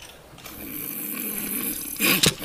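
A man's staged snore: one long, breathy snore that starts about half a second in and grows louder. It is performed as a comic gag of dozing off mid-sentence at a podium.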